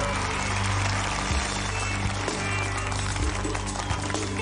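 Show-band entrance music playing under a wash of studio-audience cheering and applause, thickest in the first couple of seconds.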